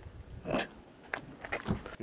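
A few scattered clicks and knocks over low background noise, the loudest about half a second in.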